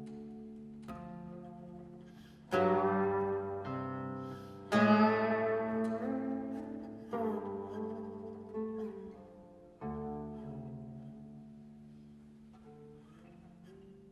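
Guqin, the seven-string Chinese zither, played solo: plucked notes ring out with long decays, some sliding in pitch as the stopping hand glides along the string. The loudest notes come about five seconds in, and the playing thins out and fades toward the end.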